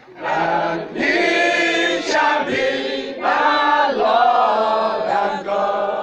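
A congregation singing a worship chorus together with a man's voice leading on a microphone, in long held notes that rise and fall.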